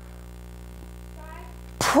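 Quiet pause in a sermon: steady room tone with a low electrical hum. A faint voice from the congregation answers about a second in. Near the end comes a sharp burst of breath into the preacher's microphone as he starts to speak again.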